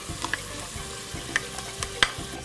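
Chopped red onion and garlic sizzling in hot olive oil in a pot, with a few sharp clicks through the steady sizzle.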